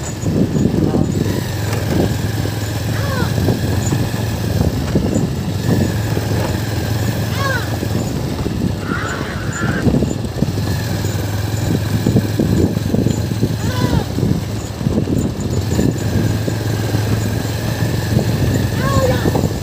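A small vehicle engine runs steadily under a continuous rough rattle as it moves along close behind a bullock cart. A few short rising calls, a few seconds apart, sound over the engine.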